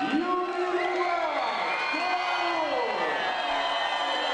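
Arena announcer's voice over the PA system, calling in long drawn-out, rising and falling phrases, over crowd noise and cheering.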